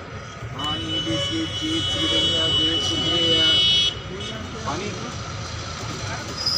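Train brakes squealing: a steady high-pitched squeal that starts under a second in and cuts off suddenly about four seconds in, as the train slows along the platform. A steady rumble of the train's running gear lies under it.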